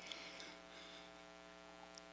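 Near silence: a faint, steady electrical mains hum in the room tone during a pause in speech.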